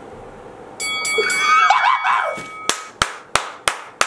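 A brief noisy sound with a few held ringing tones, the loudest part, followed near the end by hands clapping four quick times.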